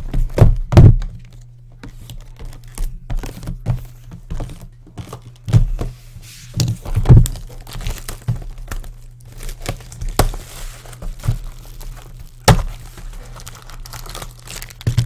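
Sealed cardboard trading-card boxes being lifted and set down on a desk, giving a series of knocks and thuds, with the plastic wrapping crinkling now and then. A steady low hum runs underneath.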